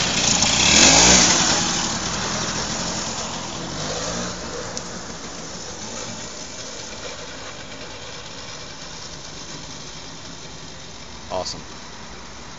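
Vintage Vespa scooter's single-cylinder two-stroke engine revving up as the clutch is let out and the scooter pulls away, loudest about a second in. It then fades steadily as the scooter rides off.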